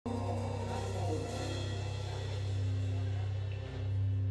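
Organ holding a low, steady chord as the band waits to start, the held notes shifting slightly a couple of times.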